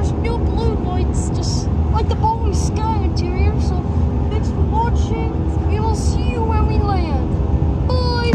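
Steady low rumble and hum of an Airbus A319's jet engines heard inside the cabin, with voices chattering over it throughout.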